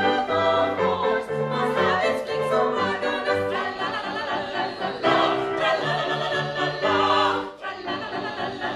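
Operetta ensemble of three female voices and a male voice singing together in classical style, accompanied by a grand piano playing short, separated bass notes under the voices. The sound dips briefly about seven and a half seconds in.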